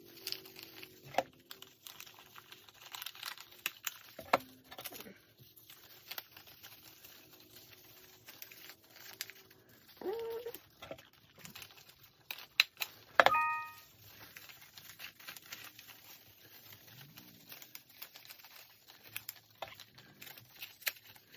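Paper strips rustling, crinkling and clicking as they are looped and pressed into a paper chain. About two-thirds of the way through comes one loud, sharp stapler clack with a brief metallic ring.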